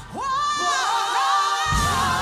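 Live gospel singing with choir: after a brief dip in the music, a voice slides up into a long held note, and the low accompaniment comes back in near the end.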